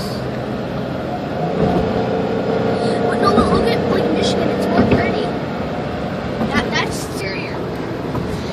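Car driving at highway speed, heard from inside the cabin: a steady noise of tyres and engine, with a hum that runs for a few seconds in the middle.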